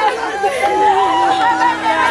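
Several women's voices wailing and crying out in mourning at once, overlapping, with one long held cry in the middle.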